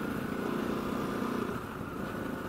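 2013 KTM 690 Enduro R's single-cylinder engine running steadily through its Wings titanium exhaust while riding at road speed, easing off slightly in the second half.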